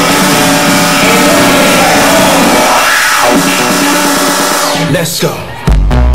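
Electronic dance music mixed by a DJ, played loud over a club sound system. A breakdown with no bass carries a sweeping effect that rises and falls. After a brief dip, the kick drum and heavy bass drop back in near the end.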